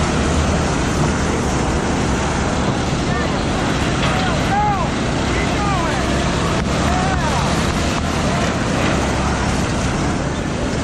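A pack of small dirt-track race cars running laps on the oval, their engines together making a loud, steady drone. Brief rising-and-falling whines come through in the middle seconds.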